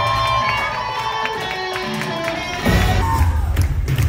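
Live pop-rock band of a stage musical, recorded from the audience: held notes over a thinned-out accompaniment, then drums and bass come back in with the full band about two and a half seconds in, with the crowd cheering.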